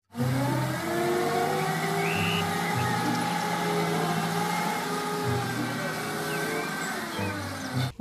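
A Nissan forklift's engine runs steadily while the forklift lifts a loaded pallet, its pitch shifting a little every second or two. A brief high squeak comes about two seconds in.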